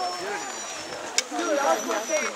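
Mostly people's voices talking and exclaiming, ending in a "wow", with one brief sharp click just past the middle.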